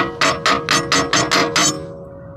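A steel hydraulic valve cartridge knocked repeatedly against a steel plate: about eight quick, ringing metal knocks in a second and a half, then they stop. The valve is jammed with plastic debris lodged inside.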